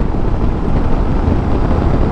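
Steady wind rush over the microphone mixed with the running noise of a Suzuki V-Strom 650 XT V-twin motorcycle at road speed.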